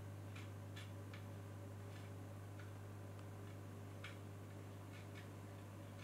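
Faint, sharp clicks of the controls on a YC Onion Pudding V2 RGB pocket LED light, pressed about eight times at uneven intervals while its colour is stepped through from blue to pink to red. A steady low hum runs underneath.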